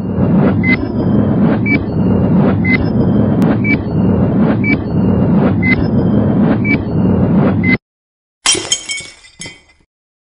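Countdown intro sound effect: a steady low rumble with a short high beep once a second, which cuts off suddenly. After a short gap comes a brief glass-shattering crash with clinking fragments that fades out.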